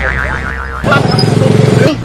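A comic 'boing' sound effect: a wobbling tone falling in pitch through the first second. It is followed by about a second of a low voice held on one note, which rises at the very end.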